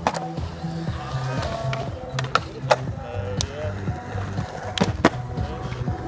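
A skateboard clacking on concrete several times at irregular intervals, with its tail snapping and its wheels landing, over background music with a steady bass line.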